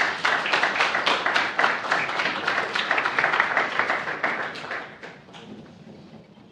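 Audience applauding. A few scattered claps quickly swell into full applause, which thins out over the fifth second and dies away.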